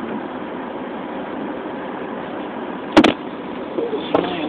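Steady cabin noise inside a car waiting in heavy traffic, with a single sharp knock about three seconds in.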